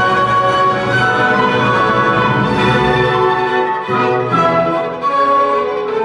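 Solo violin playing a melody in long bowed notes, accompanied by an orchestra, in live classical performance.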